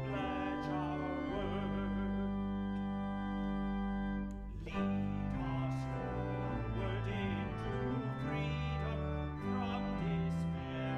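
A hymn sung by a solo voice with vibrato over sustained organ chords, with a brief pause between phrases about four and a half seconds in.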